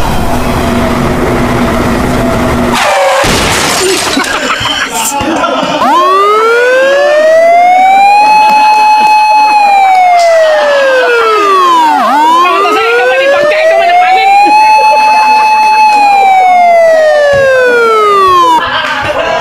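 A siren wailing, starting about six seconds in: its pitch rises, holds high for a moment, then falls, twice over.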